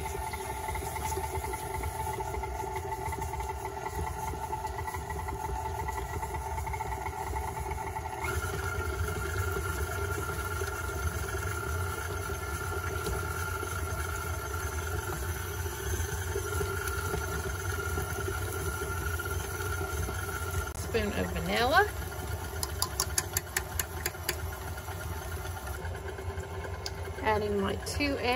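KitchenAid stand mixer running steadily, its paddle beating softened butter and brown sugar in a steel bowl; the pitch of the motor's hum shifts about a third of the way through. Near the end a short run of clicks sounds over the motor.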